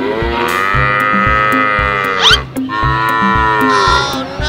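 A cow mooing twice: one long moo lasting about two and a half seconds, then a shorter one near the end. A brief rising whistle-like glide comes near the close of the first. Background music with a steady drum-machine beat runs underneath.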